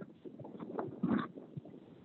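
Irregular footsteps and knocks as people walk through a doorway into a wooden building, a few short thumps with the loudest about a second in.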